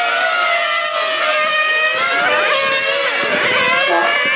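Several 1/8-scale nitro on-road RC racing cars' small glow engines running at high revs together, their high-pitched whines rising and falling and crossing one another as the cars brake, accelerate and pass.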